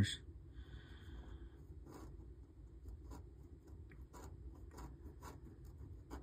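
A coin scratching the latex coating off a paper scratch-off lottery ticket in a series of quick, quiet strokes.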